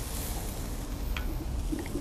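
Steady low rumble of road traffic crossing a bridge overhead, with an even hiss and a light click about a second in.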